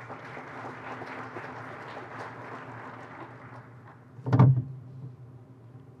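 Audience applauding, dying away after about three and a half seconds, then one loud thump a little after four seconds in.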